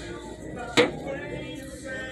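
A heavy gold crystal lotus candle holder set down on a store shelf: one sharp clack about a second in, with a short ring. In-store background music plays underneath.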